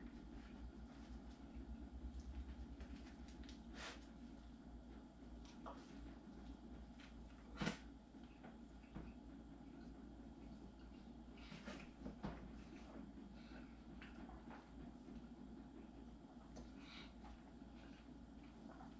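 Near silence: faint room hum broken by a few soft clicks and knocks from handling and biting into a homemade fried-fish sandwich, the loudest about eight seconds in.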